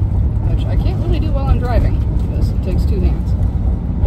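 Steady low rumble of a Roadtrek camper van's engine and road noise, heard from inside the cab while it is being driven. A woman's voice speaks briefly through the middle of it.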